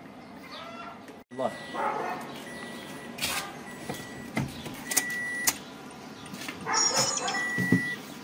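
Toyota Prius C's dashboard warning chime beeping in short, even high-pitched tones, one roughly every second, with a few sharp clicks from the cabin controls.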